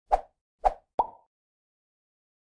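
Logo-intro sound effect: three quick pops within the first second, the last carrying a brief ringing tone.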